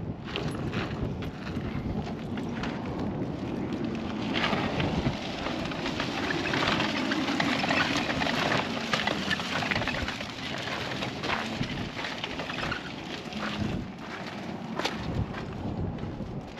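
Wind buffeting the microphone, mixed with irregular crunching and crackling of footsteps on gravel.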